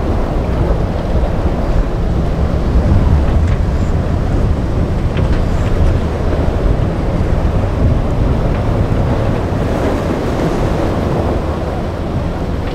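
Wind on the microphone, heavy and steady, with the wash of rough inlet waves and breaking surf.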